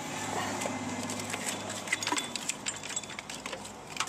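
Toothed rubber timing belt being worked off the pulleys of a Toyota 3.3L V6 by hand, with the tensioner slackened: faint rubbing and scattered light clicks over a steady low hum.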